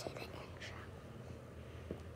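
A child whispering a word, then low handling noise: faint rustling and a couple of soft taps as plush toys are moved right against the microphone.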